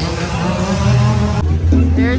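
Chainsaw engine revving, rising and falling in pitch, among voices. About one and a half seconds in it cuts off suddenly to music with a singing voice.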